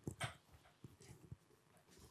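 Mostly near silence: a soft breathy chuckle from a man near the start, then a few faint light knocks.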